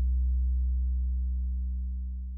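A deep 808 bass note ringing out alone after the trap beat stops, fading slowly.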